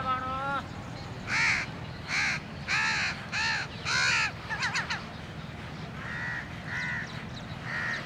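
A crow cawing: five loud caws about two-thirds of a second apart, then three fainter caws a little later.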